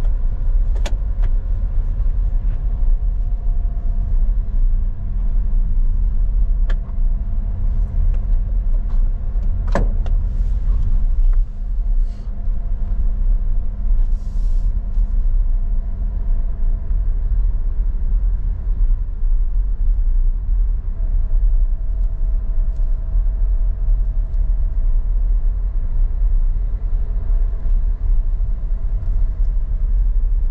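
Car cabin noise while driving: a steady low rumble of engine and tyres with a faint running hum. A few light clicks sound through it, the sharpest about ten seconds in.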